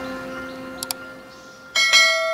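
Subscribe-button animation sound effects: a bell-like chime fading out, two quick mouse clicks a little under a second in, then a bright bell chime near the end.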